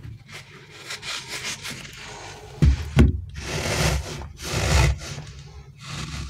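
Fingers rubbing and squeezing a stretchy rubber crocodile squish toy: a dry, scratchy rubbing, with a couple of heavy thumps about halfway through and louder rubbing after them.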